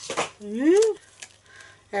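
Crinkle of a plastic packet of metal framelet dies being pulled open, then a short wordless exclamation from a woman, rising and falling in pitch, as the dies spill out; a few faint small clicks follow.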